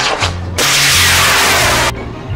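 High-power model rocket motors firing at launch: two loud hissing bursts, the first dying away about half a second in and the second starting right after and cutting off abruptly near the end. Background music with a steady bass beat runs underneath.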